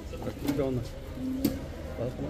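People talking in low voices in a group, with a couple of light clicks.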